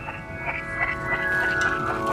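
Water pouring from a stainless steel stovetop kettle into a glass French press onto coffee grounds, with a gurgling splash. Background music plays along.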